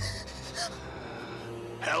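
Ragged gasping breaths over a low, steady music drone, with a rasping breath near the end that leads into a spoken word.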